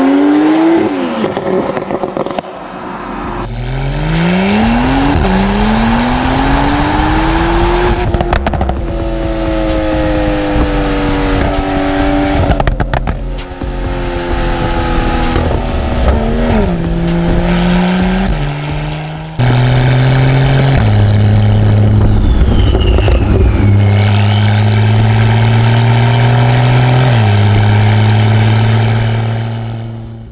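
Porsche 991.2 Carrera S twin-turbo flat-six on a valvetronic catback with catless downpipes, accelerating hard. Its pitch rises and drops in steps through gear changes, with a few sharp cracks. About two-thirds of the way in, the sound gives way to steady, even-level tones that step in pitch.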